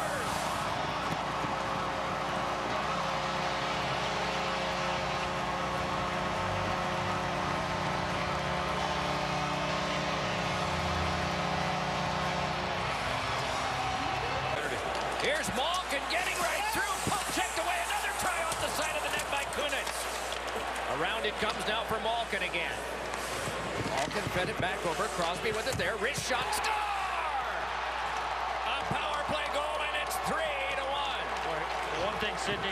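Arena goal horn sounding a steady chord for about fourteen seconds over a cheering crowd, marking a home-team goal. After that come the crowd and the scrapes and clacks of skates, sticks and puck in live ice hockey play.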